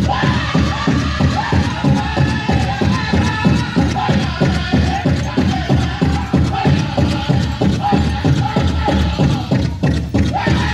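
Powwow drum group singing high over a big drum struck in a steady, fast beat.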